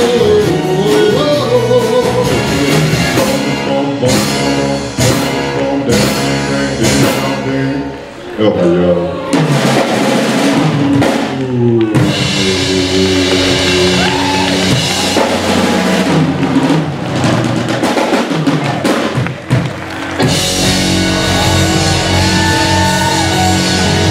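Live doo-wop vocal group singing in close harmony over a rock-and-roll band of drums, electric guitar and keyboard. A run of sharp drum hits comes a few seconds in, and from about halfway the whole band plays on loudly, building to the song's finish.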